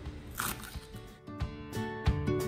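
A knife slicing mustard greens on a wooden cutting board, one short crisp cut about half a second in. Plucked-string background music comes in at about a second.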